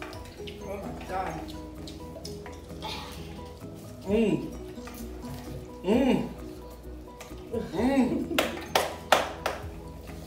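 Background music under a few short wordless cries and groans from people eating very spicy noodles. Several sharp clinks of metal forks on glass bowls come near the end.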